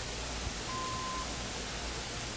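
Faint steady hiss of an old soundtrack, with one short steady beep lasting about half a second, a little under a second in. The beep is the cue tone that signals the advance to the next slide in a slide-tape program.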